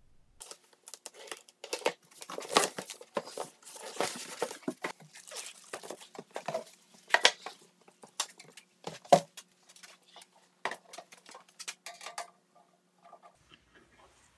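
Plastic wrapping crinkling and tearing as it is pulled off a sheet-metal electric heater, broken by sharp clicks and light knocks of the metal housing and mounting bracket being handled. The crinkling thins out near the end.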